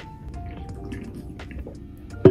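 Soft background music with a few short, plucked-sounding notes.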